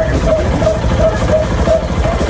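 Motorcycle tricycle's engine running and road rumble, heard from inside the sidecar while riding.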